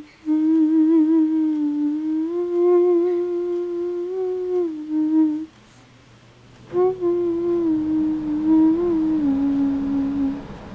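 A person humming a slow tune in long held notes, two phrases with a short break about halfway through.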